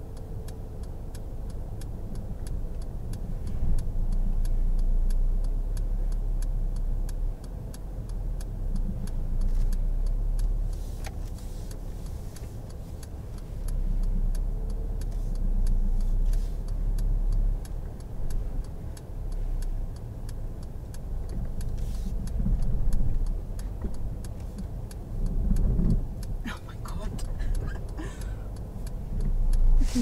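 Inside a manual-gearbox Mercedes hatchback, the engine runs with its revs rising and falling as the learner works the clutch and accelerator on a downhill slope, trying to move off for a reverse park. A steady, evenly spaced ticking, typical of the indicator relay, runs over the engine sound.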